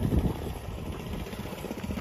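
Mini bike's small engine running steadily as the bike rolls slowly along.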